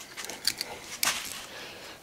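Rusty axe head being handled on its new wooden handle: a few light clicks and scrapes, the sharpest about a second in.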